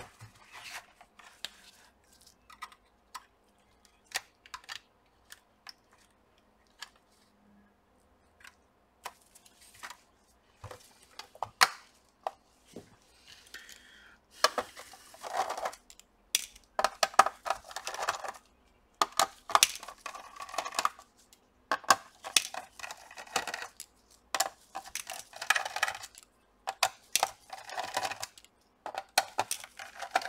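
Clicks and clattering of hard plastic laptop parts being handled and fitted by hand: scattered at first, then near-continuous from about halfway through.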